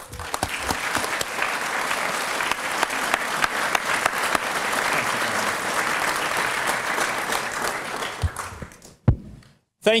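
Audience applauding, the clapping fading out after about eight seconds. A single loud thump follows about a second later.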